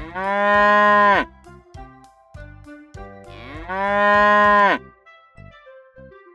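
A cow mooing twice, two long moos about three seconds apart, each rising at the start and dropping away at the end, over quieter children's music.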